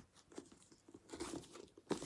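Hardcover books in paper dust jackets being handled, slid and set down: faint, irregular rustles of the jackets and soft knocks, with a sharper knock near the end.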